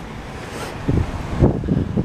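Road traffic passing on a busy street, with wind buffeting the microphone in low gusts from about a second in.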